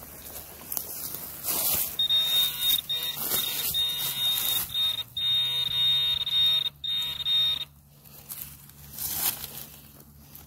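Garrett Pro Pointer pinpointer buzzing with a steady high tone in several stretches between about two and eight seconds in, the alarm that says metal lies at its tip in the dug soil. Short scrapes of soil come before and after.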